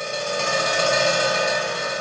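Dramatic background-score sting: a shimmering, metallic bell-like swell that rises to a peak about a second in, then eases off.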